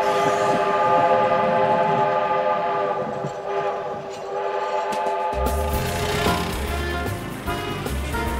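Train whistle blowing one long, steady chord; about five seconds in it stops and music with a bass line comes in.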